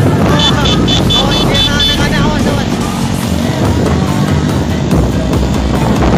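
Several motorcycle engines running in slow-moving traffic, mixed with music. A pulsing, high-pitched melodic tone runs through the first two seconds.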